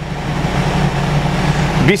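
BCT-200J heavy-duty battery tester whirring with a steady low hum as it begins loading the truck's battery bank with a 120-amp load, setting in as the continue key is pressed.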